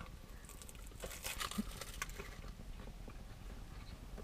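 Faint crackle of a flaky puff-pastry pie crust being bitten and chewed, with a few soft crunches about one to two seconds in, over the low hum of a car interior.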